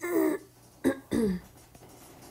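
A woman coughing and clearing her throat twice: once at the very start, and again about a second in with a sharp catch followed by a falling, voiced sound.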